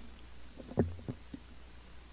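Three short, low thumps picked up by the microphone, the first the loudest, as the singer steps up to the microphone stand.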